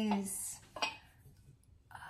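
Porcelain wax warmer being handled, its ceramic parts clinking against each other, with a sharp click a little under a second in.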